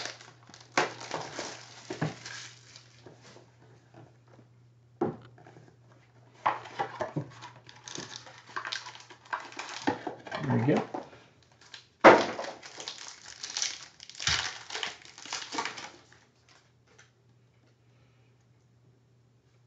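Foil trading-card packs and plastic box wrapping crinkling and tearing as a box of football cards is opened and a pack is torn open, in bursts with short pauses. The crinkling stops a couple of seconds before the end. A faint steady hum runs underneath.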